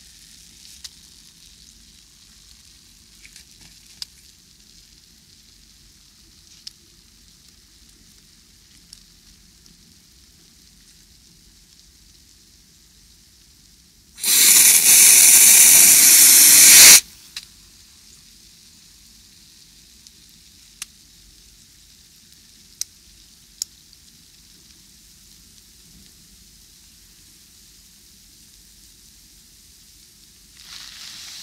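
Soap-like foam bubbles fizzing and crackling softly as they pop, with scattered tiny pops. About halfway through, a loud hiss lasts nearly three seconds and then stops.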